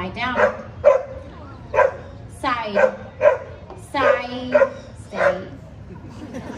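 A dog barking about eight times in short, separate barks, some clipped and a couple drawn out, while held in a stay on a trainer's commands. This is the barking the trainer calls arguing.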